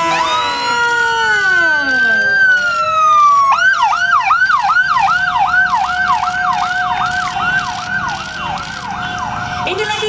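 Police escort motorcycle siren: a slow rising and falling wail for the first few seconds, then switching to a fast yelp of about three sweeps a second, with a steady tone held beneath it.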